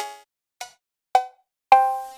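Cowbell one-shot samples from a trap drum kit, auditioned one after another: four short struck cowbell hits about half a second apart, each a different sample with its own pitch, the last ringing a little longer.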